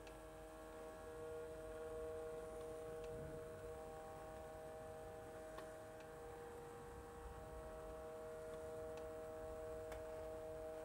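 Hornby Class 395 Javelin OO-gauge model train's electric motor humming faintly as the train crawls at a very slow speed on the train set's low-output controller, with a few faint clicks. The hum shifts in pitch partway through.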